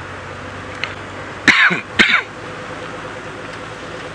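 An open safari vehicle driving on a corrugated dirt road, its engine and road noise steady. About a second and a half in, a throat-clearing cough comes twice in quick succession over it.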